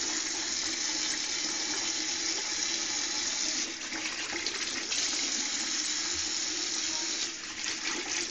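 Water running steadily from a bathroom tap into a sink, with the stream changing briefly twice, about four seconds in and near the end.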